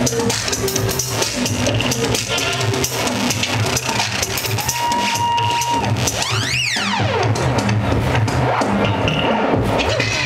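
Electronic dance music from a DJ set, with a steady drum beat. A held tone comes in about five seconds in, and just after it a sweeping effect rises and then falls.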